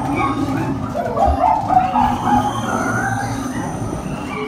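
Indoor amusement-park dark ride: a steady rumble from the ride, with wavering animal-like calls from its sound effects over it.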